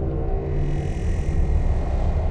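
Soundtrack music with held low tones fading out over a deep, steady rumble. A hissing whoosh swells up about half a second in and dies away by about a second and a half.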